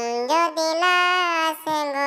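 A high, pitched-up cartoon-cat voice (Talking Tom) singing a line of a Bangla Islamic gazal with no instruments. It sings one long note that climbs in two steps and is then held, with a brief break near the end before the next phrase begins.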